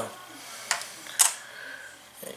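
Two short clicks about half a second apart over quiet room tone.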